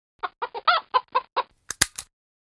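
A hen clucking, about seven short calls in quick succession, followed near the end by a few sharp clicks.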